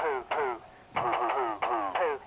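Electronic voice-recording toy dog playing back a recorded "poo" as a rapid string of short, sing-song syllables, each falling in pitch, with a brief pause about half a second in.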